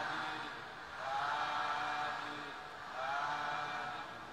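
Faint voices chanting in unison: two long, drawn-out phrases about two seconds apart, each rising in pitch at its start and then held.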